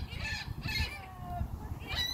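A flock of gulls calling: several short, overlapping cries, most of them in the first second.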